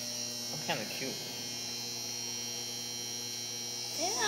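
Steady electrical mains hum, with one short, high vocal squeal falling sharply in pitch about a second in.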